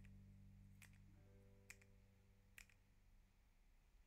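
Near silence: faint background music fading away in the first second or two, with a few faint, short clicks.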